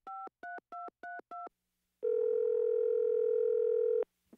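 Telephone touch-tone keypad dialing: a quick run of about five short two-note beeps. About halfway through, the ringback tone starts as the dialed number rings, one steady purring tone heard over the phone line.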